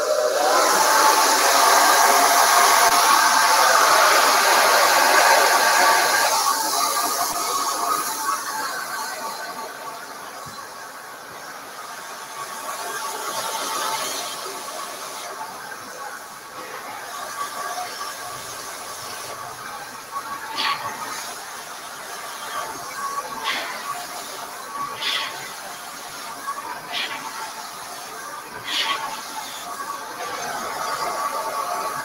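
Handheld hair blow dryer running on high heat and high airflow: a steady rush of air with a faint motor whine. It is loudest for the first six seconds, then quieter, with several brief louder swishes in the last ten seconds as it is moved around the hair.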